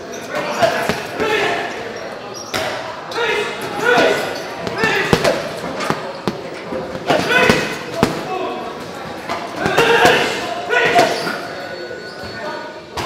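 Boxing gloves hitting a heavy leather punching bag, sharp thuds coming in fast combinations of several punches with short pauses between them.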